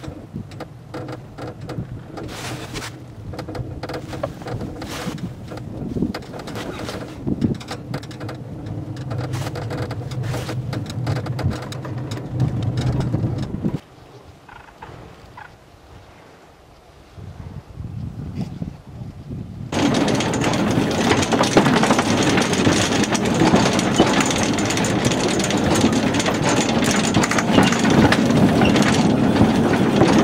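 Cable-car ride with a steady mechanical hum and scattered clicks, which drops to a quieter stretch about 14 seconds in. From about 20 seconds a small open rail car climbs an inclined track with a loud, steady, dense clatter and rush.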